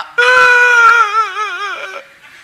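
A man's high falsetto voice acting out someone weeping. It is one long wailing cry that holds steady, then wobbles and sinks in pitch as it fades.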